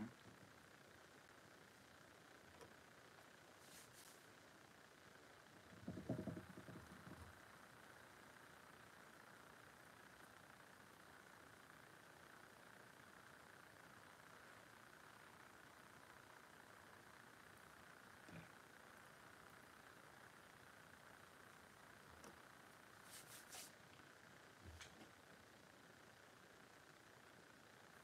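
Near silence: room tone with a steady faint hiss and a few faint handling sounds. The loudest is a brief low bump or rustle about six seconds in, with light clicks here and there.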